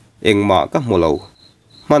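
A steady high cricket trill under a voice narrating in Mizo. The trill goes on alone for about the last second after the voice pauses.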